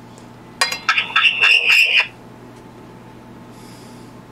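A Retevis RB22 DMR handheld radio gives a short burst of electronic tones and chirps through its speaker while being keyed for a transmit test. It starts about half a second in and cuts off sharply about a second and a half later.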